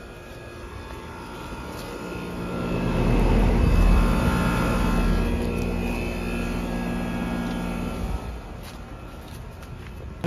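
Outdoor central air-conditioner condenser running: a steady compressor hum under fan noise. It grows louder two to three seconds in, holds, and eases off at about eight seconds.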